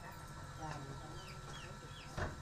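Faint yard ambience with chickens clucking a few short times over a low steady hum, and a faint murmur of voices.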